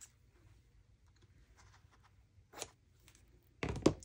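Scissors snipping paper: a few faint small cuts, then a sharper snip about two and a half seconds in. Near the end the scissors are set down on the wooden desk with a louder knock, the loudest sound.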